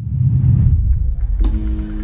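Logo sting sound design: a deep rumbling swell, then a sharp hit about a second and a half in that opens into a held musical chord.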